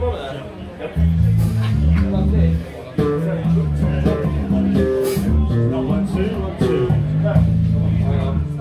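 Electric band soundchecking: a bass line stepping between low notes with electric guitar and scattered drum and cymbal hits, breaking off briefly about three seconds in.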